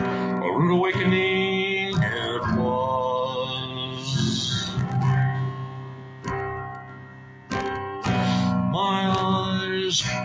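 A man singing a slow song into a microphone, with a guitar strummed along; the voice holds long notes, and the guitar plays fresh strums about two seconds in and again near the end after a quieter stretch.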